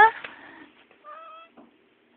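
A domestic tabby cat gives one short, soft meow about a second in.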